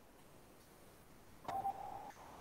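Faint room tone, then, about one and a half seconds in, a click and a short steady electronic beep lasting about half a second.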